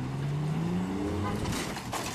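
Ford Ranger pickup's engine revving hard at full throttle as it accelerates backwards on a tow line, rising in pitch for about a second and a half and then dropping to a lower steady drone.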